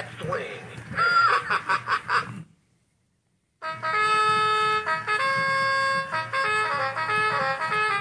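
Gemmy Big Band Big Belly Boogie Bear animatronic toy singing to its swing backing track. The sung line ends about two and a half seconds in and a second of silence follows. Then a new song starts with held notes that step up and down, and a voice shouts "Let's go! Yeah!" near the end.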